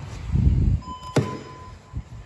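Front-door handleset's thumb latch pressed and the door worked open: a low rumble of handling, then a sharp latch click about a second in. A steady high tone sounds for under a second around the click.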